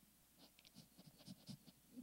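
Near silence: quiet church room tone with a scatter of faint short ticks and rustles.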